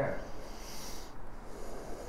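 The end of a man's spoken word, then a short, hissy breath through the nose lasting well under a second, followed by a fainter breath.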